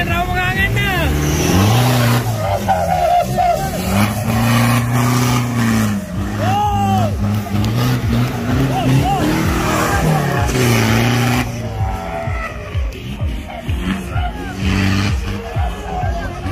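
Modified off-road 4x4's engine revving hard as it drives through mud, its pitch rising and falling several times before dropping away near the end. Spectators shout over it.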